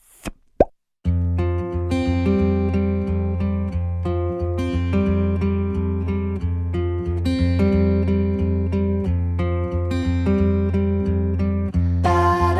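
A short pop sound effect, then from about a second in, light background music with plucked-string notes over a steady bass.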